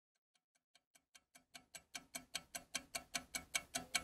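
A clock ticking sound effect, a steady run of sharp ticks about five a second, fading in from silence and growing louder.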